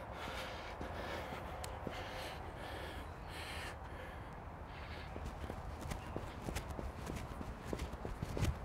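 Faint footsteps on artificial turf: a fast bowler walking back to his mark, then running in on his run-up, the steps coming quicker in the last few seconds.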